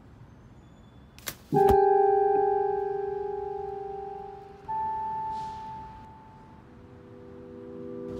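An umbrella snapping open with a sharp click, then a single keyboard note that rings out and slowly fades. A second, higher note comes in near the middle, and soft held chords swell up near the end.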